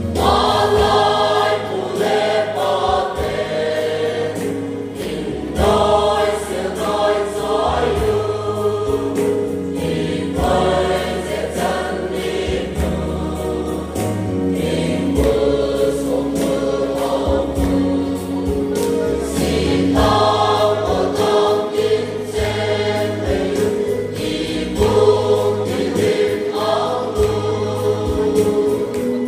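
Mixed choir of men and women singing a gospel song in parts, over held low bass notes that change every second or two.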